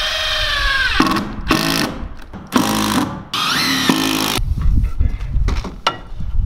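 Cordless drill driving screws into a wooden sill board. One long run slows as the screw seats about a second in, then comes a series of about four short bursts, each sliding in pitch at the end. The drill stops after about four and a half seconds, leaving a low rumble and a few clicks.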